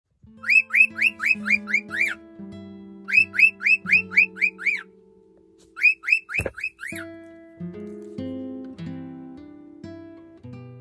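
A cockatiel chirping in three quick runs of short rising chirps, about four a second, over background guitar music. A single knock about six seconds in.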